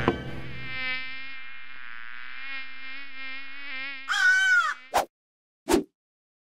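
A steady buzzing drone, slightly wavering in pitch, for about four seconds. Then comes a brief louder swoop up and back down, and two short whooshes near the end.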